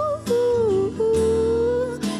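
A woman singing two long held notes, accompanied by an acoustic guitar.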